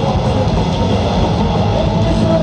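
Punk rock band playing live at full volume, its guitars and drums blurred into a steady, dense wash of noise by an overloaded recording.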